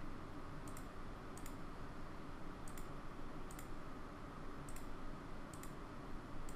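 Computer mouse clicking, a handful of sharp single and double clicks spread about a second apart over faint steady room hiss, as image files are chosen in a file dialog.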